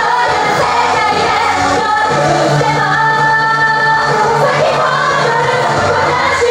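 Idol pop song with several female voices singing into microphones over a full backing track.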